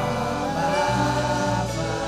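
Live gospel worship music: a woman's voice and other voices singing long held notes over an electric bass guitar and band.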